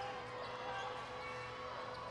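Faint, steady background sound of a basketball arena picked up by the broadcast microphones, with a low, even hum under it.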